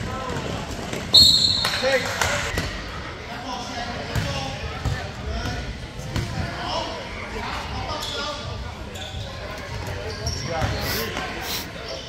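Basketball game in a gymnasium: a referee's whistle blows once, sharp and high, about a second in, the loudest sound. Then the ball bounces on the hardwood floor under the chatter of spectators.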